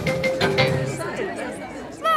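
Cartoon helicopter's engine hum and rotor chop, fading out within the first second as it flies off. Faint murmuring voices follow.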